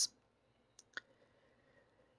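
Near silence between spoken phrases, with two faint mouth clicks from the narrator about a second in.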